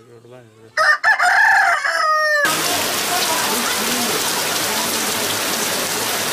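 A rooster crows once, a loud call of about a second and a half that drops in pitch at the end. It is cut off abruptly about two and a half seconds in by steady heavy rain falling on corrugated metal roofing and dripping from the eaves.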